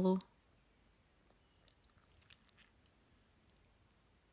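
The end of a woman's spoken phrase, then near quiet with a few faint, short clicks.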